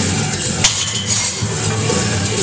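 Rock music playing, with one sharp metallic clank about two thirds of a second in: a loaded barbell being racked into the power rack's hooks.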